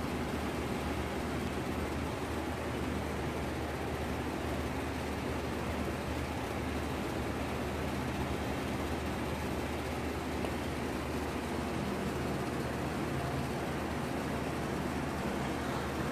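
Steady low hum with an even hiss from shop machinery running unchanged.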